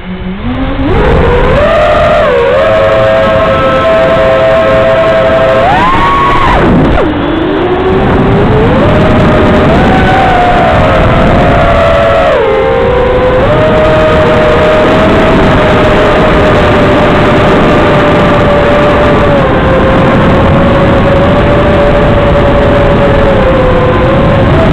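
Brushless electric motors of an FPV aircraft whining under throttle. The pitch climbs in the first second, jumps higher around six seconds, drops sharply, then settles into a steady whine that shifts a little with throttle.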